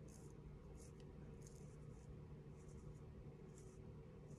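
Faint scratchy strokes of an eyebrow pen tip drawn across the brow, several short strokes one after another, over a faint steady hum.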